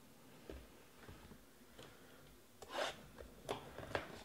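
Faint handling sounds of a cardboard trading-card hobby box being reached for and moved on a cloth-covered table: a few soft rubs and taps, the loudest a brief rustle a little under three seconds in.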